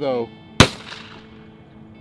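A single shotgun shot about half a second in, sharp and loud, with a brief echo dying away after it.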